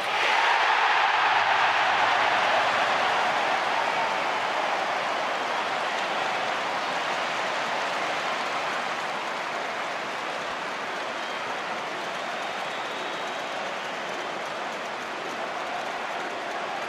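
Football stadium crowd cheering a goal: a loud roar right at the start that slowly dies down into a steady crowd noise.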